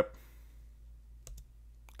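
A few short, quiet clicks at a computer, a quick pair about a second in and another near the end, over faint room tone.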